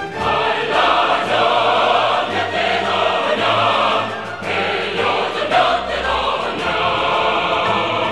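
Choir singing with instrumental accompaniment, dipping briefly in loudness about four and a half seconds in.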